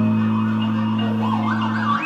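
Live experimental music: a held low bass drone with a warbling, siren-like wavering tone gliding up and down above it.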